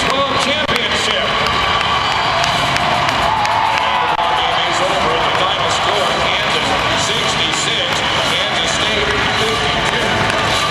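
A loud, steady mix of indistinct voices and crowd noise, with a basketball highlight video's soundtrack playing over loudspeakers.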